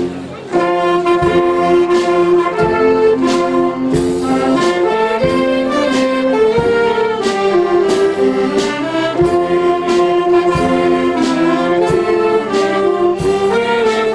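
Spanish wind band (banda de música) playing a pasodoble: a brass melody with trumpets, saxophones and trombones over a steady march beat of drum strokes. The music dips briefly at the very start.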